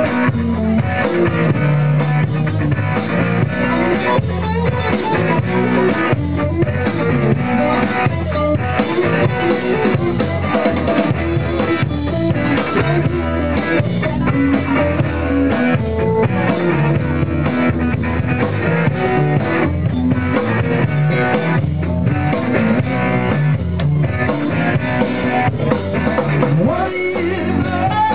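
Live rock band playing an instrumental passage without vocals: electric guitar over a drum kit, steady and loud throughout.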